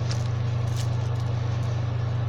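A steady low hum under a background hiss, with a few faint clicks or rustles.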